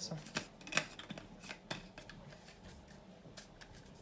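Lid of a Stanley stainless-steel vacuum mug being handled, giving several light plastic clicks in the first two seconds, the sharpest about three quarters of a second in, then a few faint ticks.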